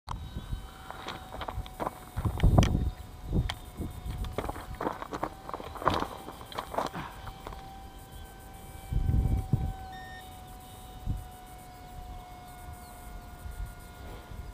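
Outdoor handling or ground noise of a resting camera: scattered clicks and knocks, with two louder low rumbles about two and nine seconds in, over a faint steady high whine.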